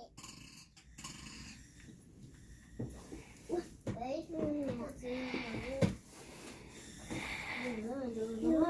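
A young child's voice babbling in short wordless phrases, with a few soft knocks, in a quiet small room.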